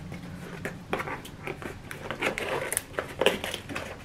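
Small taped cardboard box being handled and opened by hand: scattered rustles, scrapes and short taps of cardboard and packaging.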